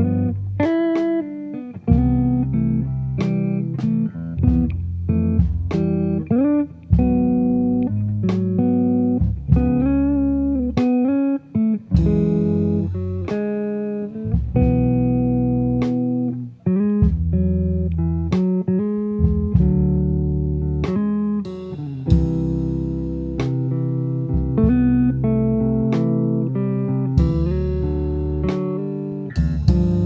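Background music: an instrumental track of plucked guitar over a bass line, with no singing.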